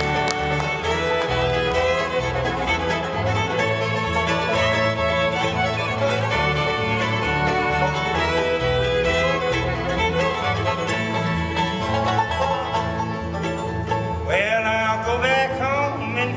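Live bluegrass band playing an instrumental passage on fiddle, banjo and acoustic guitar over a steady bass line. A singer's voice comes in near the end.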